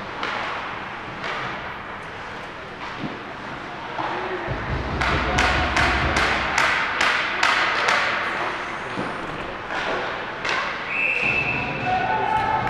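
Indoor ice rink during a hockey game: sharp knocks and clacks of sticks, puck and boards echoing in the hall, with a quick run of knocks, about three a second, in the middle, over spectators' chatter and a low rumble.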